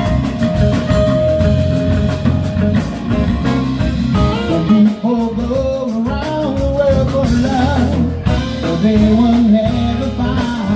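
Live band playing with drums, electric bass and electric guitar, a singer's voice coming in about four seconds in.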